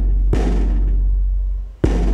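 Frame drum with a hide head struck with a wooden stick: two slow beats about a second and a half apart, each ringing on deep and full.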